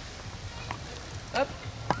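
Quiet outdoor background with a short voice call about one and a half seconds in and a sharp click just before the end.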